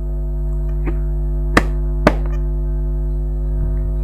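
Sharp plastic clicks as a full-face motorcycle helmet is handled and its visor snapped shut: a small click about a second in, then two louder ones about half a second apart. A steady electrical hum runs underneath.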